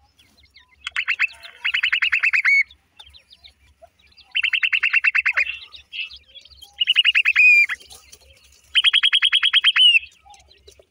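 Francolin calls: four rapid chittering trills, each about a second long at roughly ten short notes a second, the last two ending in a downward slur.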